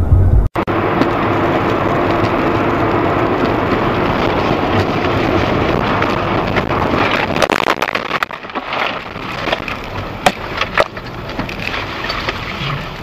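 Road and wind noise inside a car driving on a snowy, slushy road. From about seven seconds in, a run of sharp knocks and crackles comes through as the steady noise drops.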